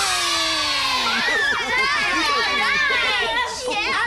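A group of children cheering and shouting together, many voices at once.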